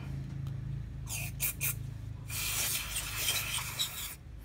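Aerosol carburettor cleaner spraying from its can into a motorcycle fuel-injection throttle body: a few short hisses about a second in, then a longer steady hiss from about halfway.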